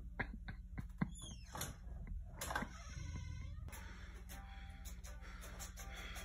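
Faint scattered clicks and knocks, with a short tone that dips and then rises in pitch about halfway through, over a steady low hum.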